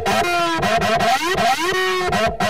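Electronic dance track: pitched synth tones slide down in pitch, then glide back up near the end, over a dense low beat.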